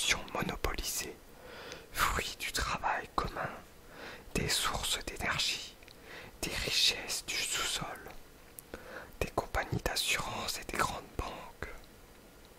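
A voice whispering, reading a French text aloud in short phrases with brief pauses between them.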